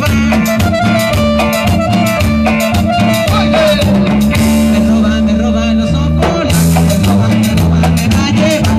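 Live band playing upbeat Latin dance music: an electronic keyboard melody over electric bass, with steady percussion.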